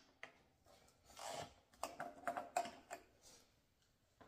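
Faint, scattered clicks and light knocks of hand tools being handled, with a brief soft rustle a little after a second in.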